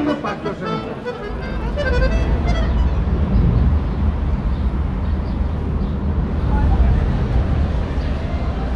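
Accordion playing for the first two seconds or so, then breaking off, while a steady low rumble comes in and carries on with faint street noise over it.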